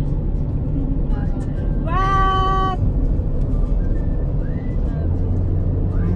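Car cabin noise while driving uphill: a steady low rumble of engine and tyres on the road. About two seconds in, a single held high note lasts under a second.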